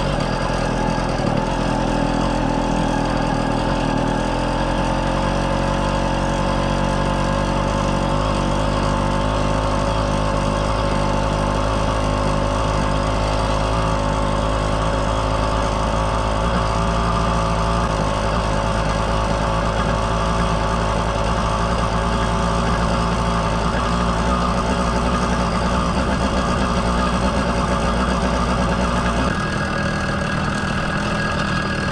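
Two-stroke motorized-bicycle engine running under way as the bike is ridden, its pitch climbing over the first few seconds and then holding steady.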